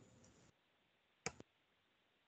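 Near silence on a video-call line, broken by one short sharp click just over a second in and a fainter click right after it.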